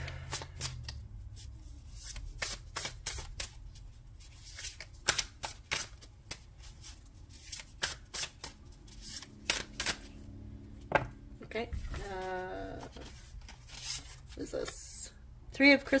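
Tarot cards being shuffled by hand: a string of irregular, quick papery clicks and flicks, with a short murmur of a voice about three-quarters of the way through.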